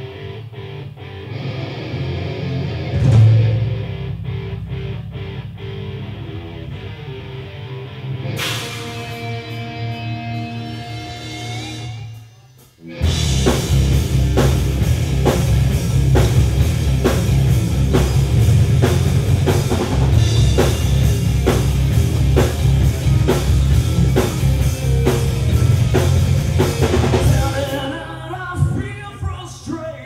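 Live rock band with electric guitars, bass and drum kit: a quieter passage of held guitar notes for about twelve seconds, then after a brief drop the full band comes in loud with a steady, driving drumbeat.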